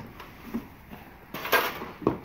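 A cardboard box being pulled out of a pile and lifted: a light knock, then a short scraping rustle of cardboard about a second and a half in.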